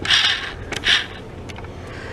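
Handling noise from a cardboard makeup box being held and turned: two short scuffing rustles, near the start and about a second in, with a few light clicks.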